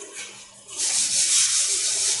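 Whiteboard eraser rubbing across a whiteboard: a steady rubbing hiss that starts a little under a second in.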